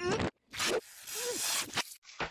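Cartoon soundtrack: a short, rapid rasp, then a long hiss with a strained, wavering vocal groan under it.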